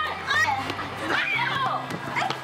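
High-pitched, excited voices over background music with steady low bass notes.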